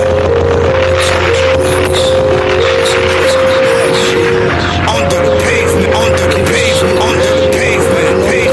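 Hip-hop instrumental beat playing: a melody of held notes over a steady bass line and a regular drum pattern, with a few short high chirps in the second half.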